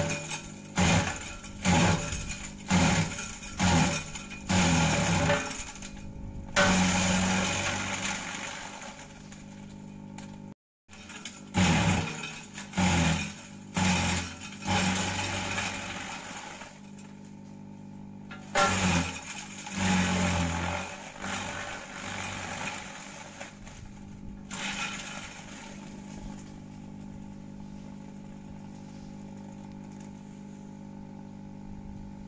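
Kelani Composta KK100 chaff cutter chopping gliricidia branches. The machine runs with a steady low hum, and loud sharp chops come about twice a second as stems are fed in. They come in three bouts, and near the end the machine runs on without load.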